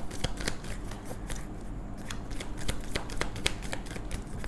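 A deck of tarot cards being shuffled by hand, a quick, irregular run of papery clicks and flicks.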